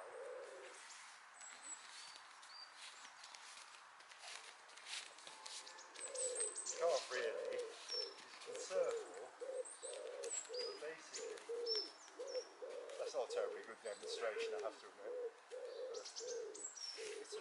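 A pigeon cooing in a long run of low, evenly repeated notes starting about six seconds in, with small birds giving short high chirps over it.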